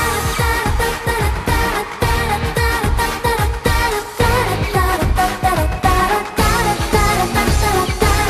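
K-pop dance track with a female group singing over a heavy, regular bass-drum beat.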